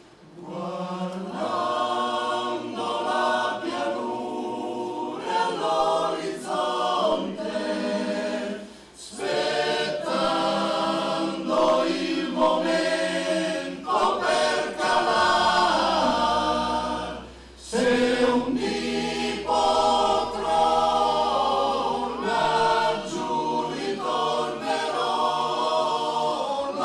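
Male choir singing a solemn partisan song a cappella, in long held phrases with brief pauses for breath about nine and seventeen seconds in.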